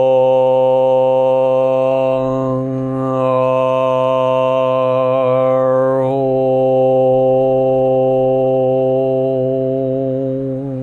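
A man chanting a mantra aloud on one long, steady held note, his vowel sound shifting twice along the way.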